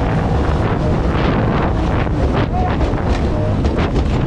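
Wind buffeting the microphone over loud rushing whitewater as a mini jet boat runs the rapids, with repeated splashes as spray breaks over the bow.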